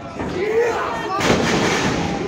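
A heavy, booming thud of a wrestler's body slamming onto the wrestling ring's canvas, about a second in, ringing on for about half a second. Crowd voices and a shout come just before it.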